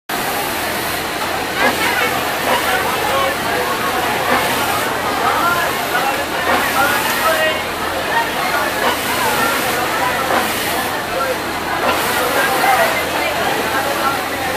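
Steady din of a garment factory sewing floor: an even hum of running industrial sewing machines, with several voices talking over it.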